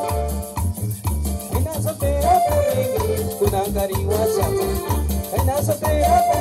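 Live band playing Latin dance music: keyboard, bass and hand percussion (timbales and congas), with a steady low bass beat under a wavering melody line.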